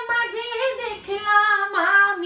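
A woman singing a Bengali song, holding long, slightly wavering notes without accompaniment.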